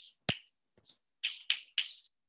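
Chalk writing on a chalkboard: a string of short, high-pitched strokes as symbols are written, with one sharp tap of the chalk against the board about a third of a second in.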